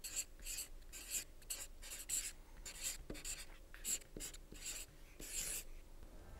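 Marker pen writing on a whiteboard: a run of short, scratchy pen strokes, a few a second.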